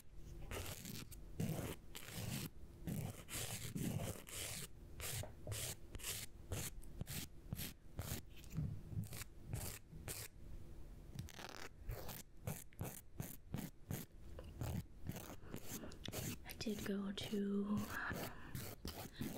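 Nail file scraping across fingernails in quick, repeated short strokes.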